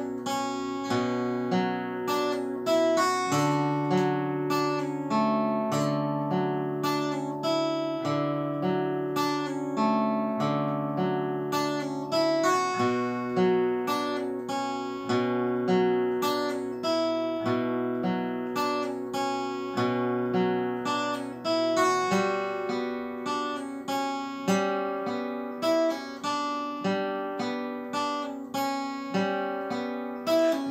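Solo acoustic guitar playing a slow passage of picked chords, each note ringing on, in a steady, even pulse.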